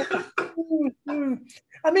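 Men laughing, a few short laughs that fall in pitch.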